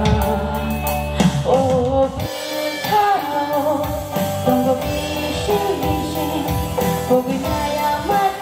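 A woman singing a Kokborok song into a microphone, amplified over music with a drum kit and guitar; the deep bass drops out for a while about two seconds in.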